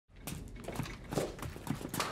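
Soldiers' boot footsteps, an irregular run of steps, knocks and scuffs.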